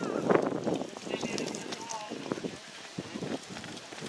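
A horse galloping on grass, its hoofbeats heard under people talking nearby; the talk is loudest in the first second and then drops away.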